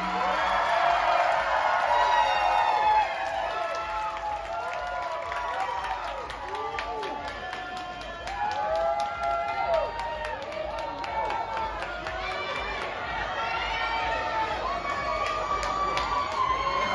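Audience cheering and calling out, with many overlapping voices, chatter and scattered clapping.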